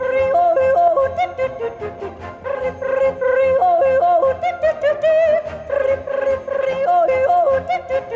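A woman yodeling live into a microphone, her voice flipping quickly back and forth between a low and a high pitch in repeated yodel phrases.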